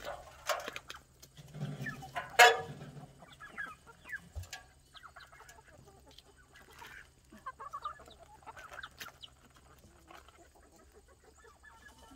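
A flock of backyard chickens clucking in short, scattered calls as they crowd in to peck at freshly dumped vegetable and apple scraps, with one sharp, louder sound about two seconds in.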